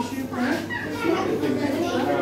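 Children's voices talking and calling out, several overlapping, with no clear words.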